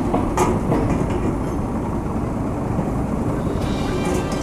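Train running on the rails: a steady low rumble, with a few sharp clicks in the first second.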